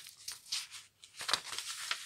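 Paperback book being handled and moved close to the microphone: a run of short, crackly rustles of paper and handling.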